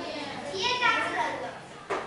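A child's voice speaking in a classroom, with a single short click near the end.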